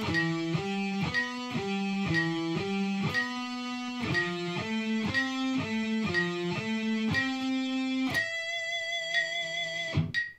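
Electric guitar with a clean tone playing single notes in an even eighth-note line at 60 beats a minute, about two notes a second. A metronome clicks once a second throughout. About eight seconds in, the line stops on a final note that is left ringing.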